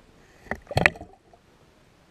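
A knock about half a second in, then a quick cluster of louder knocks and rattling just before the one-second mark: something bumping against an underwater camera, heard through the camera in the water.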